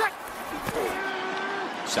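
A man's voice calling out one drawn-out word over a steady background haze.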